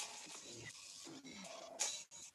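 Quiet room tone picked up through a video-call microphone, with a short soft hiss near the end.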